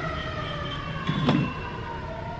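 A single long tone with overtones, slowly falling in pitch, with a brief knock a little past a second in.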